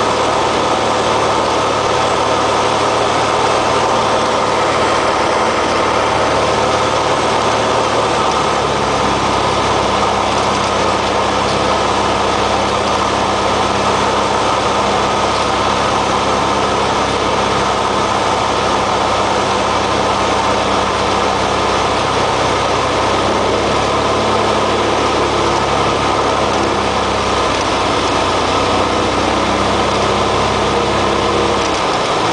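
Cessna 172XP's six-cylinder piston engine and propeller running at reduced power on final approach, heard from inside the cockpit as a loud, steady drone with airflow noise. The engine note shifts slightly about a third of the way in and again near three-quarters of the way through.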